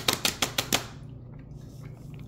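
Fingers tapping quickly on a stone tabletop: a fast run of sharp taps that stops about a second in.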